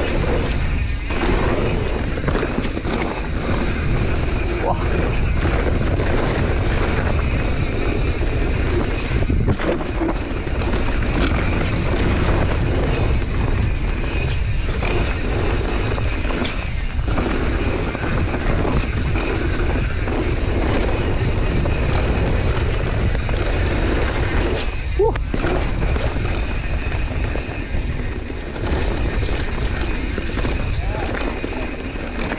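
Propain Spindrift mountain bike running fast down a loose dirt and gravel trail: continuous tyre noise and wind rumble on the helmet-camera microphone.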